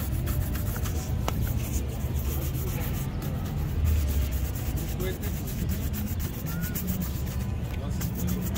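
Bristle shoe brush scrubbing a leather shoe in rapid back-and-forth strokes, over a steady low rumble.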